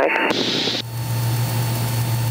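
Mooney M20K's engine and propeller heard inside the cabin in cruise flight: a steady low drone under an even rushing noise, coming up as the intercom speech stops. A short high hiss sounds about a third of a second in.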